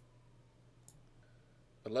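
Two faint clicks of a computer mouse, one at the start and one about a second in, over a low steady hum; a man's voice starts speaking just before the end.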